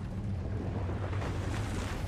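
Steady rushing noise from the anime's soundtrack effects, swelling slightly.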